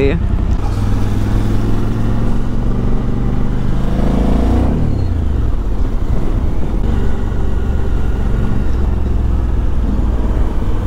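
Suzuki V-Strom 1050XT's V-twin engine running at a steady cruise, with road and wind noise. About four seconds in, the engine pitch rises and then falls away.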